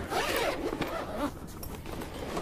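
Zipper of a soft padded trombone gig bag being pulled open, loudest in the first half second and then trailing off.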